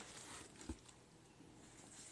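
Near silence: room tone, with one faint tap less than a second in as something is handled on the craft table.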